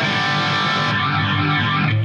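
Electric guitar played through a Boss ME-70 multi-effects processor set to its Stack preamp distortion, with the compressor and a modulation effect switched on: a chord held and ringing at a steady level.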